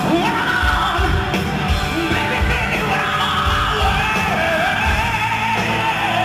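Live hard-rock band with heavy drums, bass and electric guitar, and a male lead singer wailing a high, wavering yelled vocal line over it.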